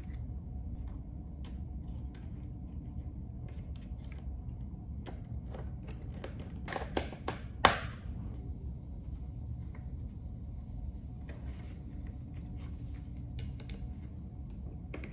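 Light clicks and taps of electrical wire being handled and a small screwdriver working the terminal screws of a plastic wall switch and lamp holder, busiest in the middle with one sharper click about eight seconds in, over a steady low background hum.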